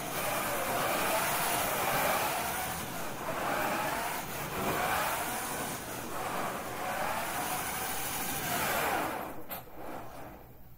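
The swerve-drive robot's electric drive motors whine, the pitch rising and falling again and again as the robot speeds up and slows along its autonomous path, over a steady hiss. The sound dies away near the end as the robot comes to a stop.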